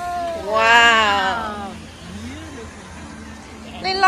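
A person's high-pitched, drawn-out squeal with a wavering pitch, lasting about a second, followed by a softer short rising and falling vocal sound.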